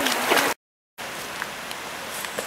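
Water rushing over a shallow stony river riffle, cut off abruptly by a moment of dead silence about half a second in. Then the river is heard more faintly and steadily, with a few light clicks.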